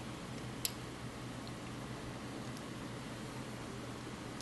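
Small computer-style cooling fans running with a steady, soft airy whir, switched on by the temperature-controlled relays, with one short sharp click about two-thirds of a second in.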